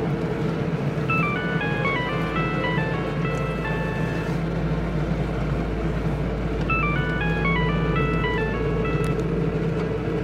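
Mobile phone ringtone: a short melody of high, plinking notes plays through twice with a pause between, over the steady hum of a car cabin on the move.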